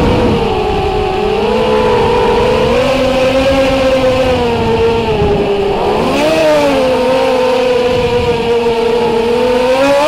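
Brushless motors and propellers of a small FPV racing quadcopter, heard through its onboard camera, whining steadily with a pitch that rises and falls as the throttle changes. There is a quick rise and dip about six seconds in, and another rise near the end.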